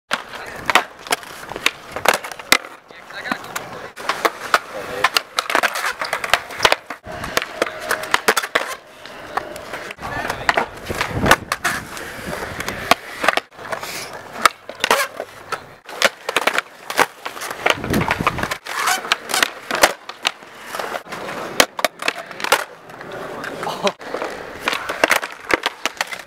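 Skateboard rolling on smooth concrete, with many sharp pops of the tail and slaps of the deck and wheels landing as flatground flip tricks are done one after another.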